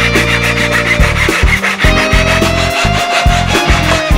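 Backsaw cutting through a wooden dowel held in a wooden sawing jig, in repeated back-and-forth strokes. Guitar background music plays underneath.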